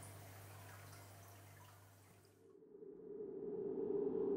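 Faint room tone with a low hum that cuts off about two and a half seconds in. A low whooshing drone then swells steadily louder toward the end, an edited-in sound effect.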